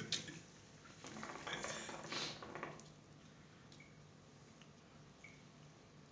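Faint gurgling of water in a hookah's glass base as smoke is drawn through it, mostly in the first half, over a low steady hum.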